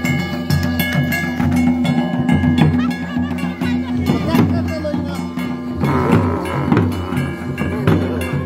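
Live Pahari village band music: a barrel drum beating under steady held notes from wind instruments.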